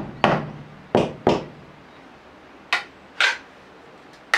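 Bamboo being split with a bamboo-working knife: the blade knocked into the end of the bamboo against a wooden stump block. Five sharp knocks and cracks come in two bunches, three then two, the first leaving a short low ring.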